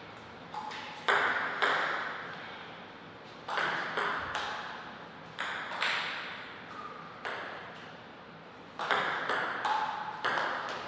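Table tennis ball clicking off the paddles and the table in short rallies, about a dozen sharp hits, several coming in quick pairs. Each hit rings briefly and fades in the hall's echo.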